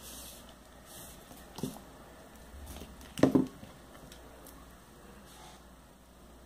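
Faint handling sounds of fingers working a needle and nylon thread through a beaded rubber flip-flop strap, with a small tick about a second and a half in and one short, louder knock about three seconds in.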